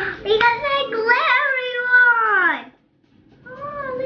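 A girl's high, drawn-out wordless voice sound that wavers and then slides steeply down in pitch before stopping abruptly. A short vocal sound follows near the end.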